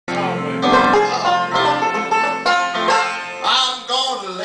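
Banjo picked in a quick run of plucked notes.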